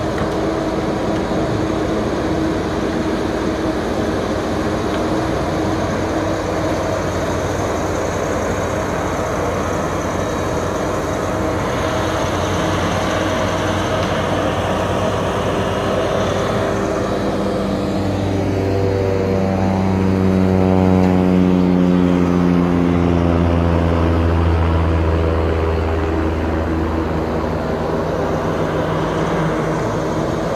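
John Deere knuckleboom log loader's diesel engine running steadily as the machine works. In the second half it grows louder and its pitch falls slowly over several seconds.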